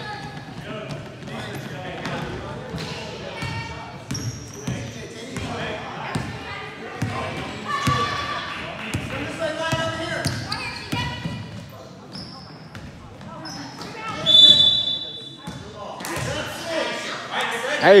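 A basketball bouncing on a hardwood gym floor during a game, among players' and spectators' voices echoing in a large gym, with a few short high squeaks, the loudest about fourteen seconds in.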